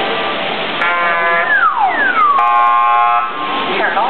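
Electronic beeping tones over a steady rush of water noise: a steady buzzer-like tone about a second in, then two falling whistle-like glides, then another steady tone that stops at about three and a quarter seconds.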